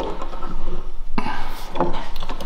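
A thin steel scraper cut from an old bandsaw blade being turned around and slid along the edge of a wooden workbench: a knock, then a scraping rub about a second in.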